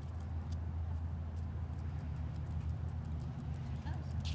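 A small dog's claws ticking irregularly on concrete as it walks, over a steady low rumble.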